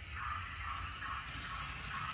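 Faint running sound of an N scale model train moving along the track, a soft pulse about twice a second over a low hum.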